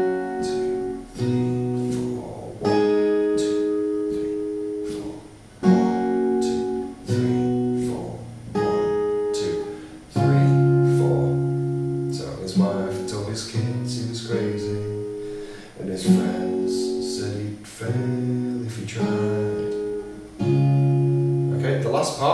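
Steel-string acoustic guitar, capoed at the sixth fret, playing a chord progression: C, F and a D power chord, then C, F, D and a G with the open B string ringing. Each chord is struck and left to ring, with a new one every second or two.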